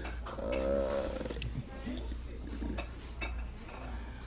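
A person's drawn-out vocal sound, about a second long, rising and falling in pitch near the start, followed by scattered clinks of dishes and cutlery over a steady low background hum.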